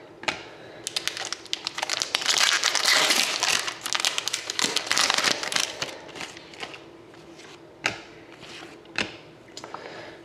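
Trading cards being handled and flipped through, with crinkling of packaging. A dense run of crinkle and rustle fills roughly the first half, then thins to a few scattered light clicks.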